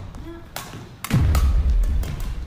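A heavy thump about halfway through with a deep booming tail, among lighter clicks, with music underneath.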